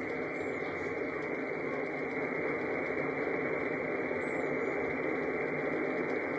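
Steady shortwave static from an RTL-SDR Blog V3 receiver tuned to the 40 m amateur band, heard through a laptop speaker with no station transmitting. The hiss is dull, cut off above about 2.5 kHz by the receiver's narrow voice filter.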